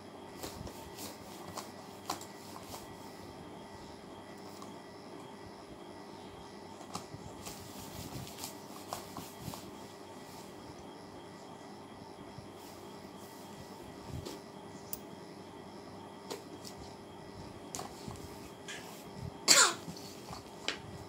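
Steady room hum with scattered soft rustles and small taps of a toddler handling a doll and bedding on a bed. Near the end, one short loud vocal sound with a falling pitch, like a cough.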